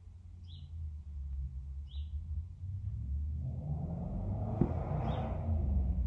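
Low steady rumble with a few short, high chirps, and a rushing noise that builds from a little past halfway.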